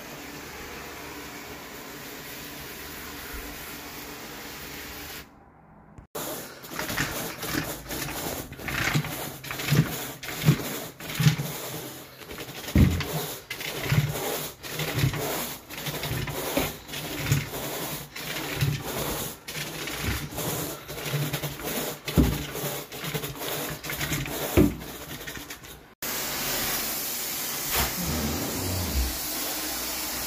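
Steady rushing noise of a carpet extraction machine and wand, then a carpet rake dragged back and forth through the carpet pile in short scratchy strokes, about one to two a second. Near the end the steady extractor noise comes back.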